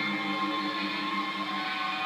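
Reggae band playing live, a sustained passage of held notes with no clear beats standing out.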